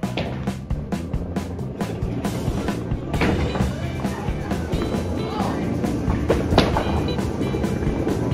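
Background music with a steady beat, over which a bowling ball rolls down the lane from about three seconds in and hits the pins with a sharp crack near the end.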